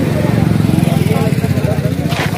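A small vehicle engine running close by with a rapid, even low pulsing, over people talking nearby.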